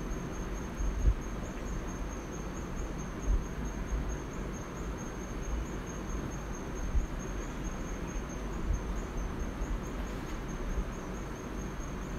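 A steady, thin high-pitched whine over a low background rumble, with a few soft knocks, while a pencil draws on paper.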